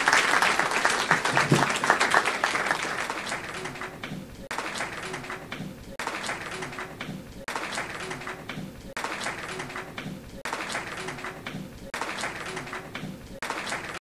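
Audience applauding, loud for the first few seconds and then dying down to a quieter clatter and murmur that pulses in an even, repeating pattern about every second and a half.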